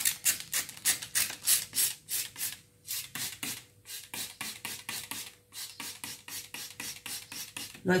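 Plastic trigger spray bottle being pumped rapidly, about four or five short spritzes a second, spraying potassium soap solution over a succulent rosette. The spritzes are loudest in the first three seconds, with a brief pause about five and a half seconds in.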